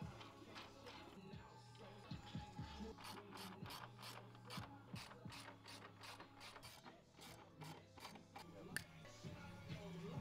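A socket ratchet wrench on an extension clicking in a steady run, about three clicks a second, as a bolt on the snowmobile's new front A-arm is driven in. The clicking starts a few seconds in and stops near the end.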